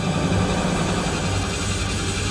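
A low, steady rumbling drone from the horror serial's dramatic soundtrack, swelling slightly just after it begins.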